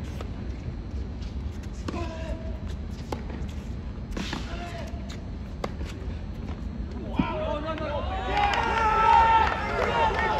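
Tennis rally: a ball struck by rackets with sharp pops about once a second, with brief shouts in between. From about seven seconds in, a group of people cheers and shouts, many voices at once, growing louder toward the end.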